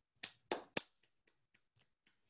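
One person clapping, hands together: three clear claps in the first second, then several fainter ones.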